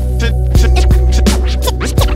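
Hip hop instrumental beat with DJ turntable scratching over a steady bass line and kick drum.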